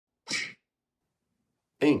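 A single short, sharp breathy burst from a person, about a third of a second long, shortly after the start, sneeze-like.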